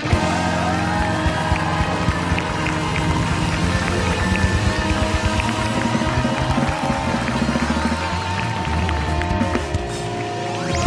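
Upbeat band music with drums keeping a steady beat.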